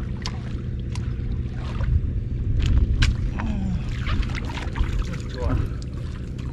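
Wind rumbling on the microphone, with scattered small clicks and splashes from someone wading and working a stick in shallow river water.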